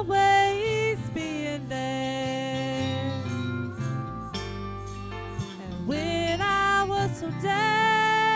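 A woman singing a country gospel song into a microphone over electric guitar backing. Her voice slides up into long held notes, with a short break in the singing a little past the middle.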